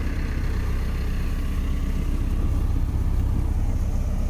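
Mahindra Arjun Novo 605 tractor's four-cylinder diesel engine running steadily at low speed as the machine rolls along.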